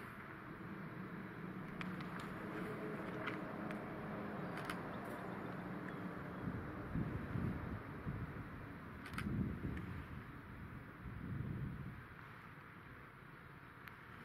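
Distant diesel locomotive engines running steadily. A few sharp clicks fall in the first half, and low rumbles come and go through the second half.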